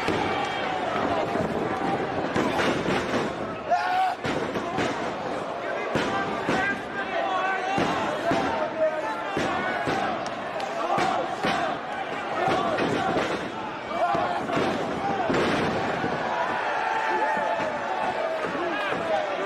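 A wrestling crowd shouting and chanting all through, with sharp thuds from the ring at irregular moments, one standing out in loudness early on.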